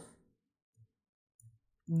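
A man's voice trails off into a pause of near silence holding two faint, short taps about two-thirds of a second apart, typical of computer mouse clicks; speech starts again near the end.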